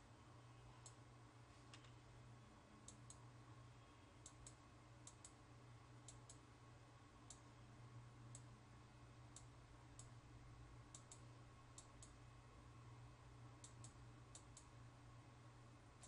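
Faint computer mouse clicks, irregular and about one to two a second, over a low steady hum, all near silence.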